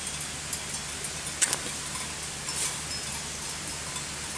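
Knife cutting through a juicy, hollow Himalayan balsam stalk at a slant: a few short, crisp cuts, the clearest about a second and a half in and again near three seconds, over a steady low hum.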